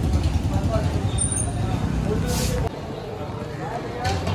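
A vehicle engine idling steadily among background chatter, cut off abruptly about two-thirds of the way through, after which only quieter crowd chatter remains.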